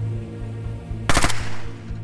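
A short burst of automatic gunfire, several rapid shots about a second in, over a low sustained music drone.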